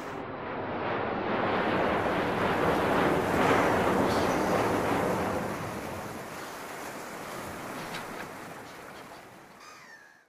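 Sea surf: one long wash of a wave that swells to its loudest about three and a half seconds in, then slowly fades away.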